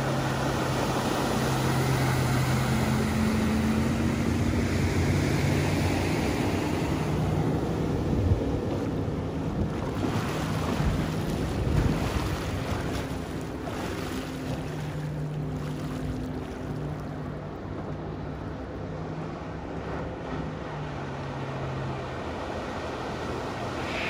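Supreme ZS212 wake boat's 6.0-litre, 400 hp inboard engine running at speed, fully ballasted, with the rush of spray and water off the hull and wind on the microphone. The engine hum is loudest early on, fades in the middle as the boat runs far off, and comes back more faintly later.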